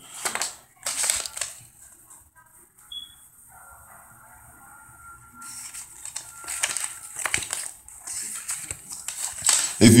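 Paper CD booklet rustling and crinkling as it is unfolded and handled. There are short bursts about a second in, then a longer stretch of rustling over the second half.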